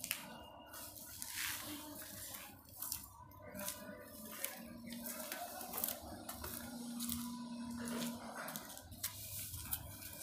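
Rustling and irregular scraping from a phone being carried and handled while its owner walks along a concrete corridor.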